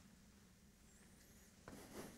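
Near silence: room tone with a faint steady hum and one brief soft noise near the end.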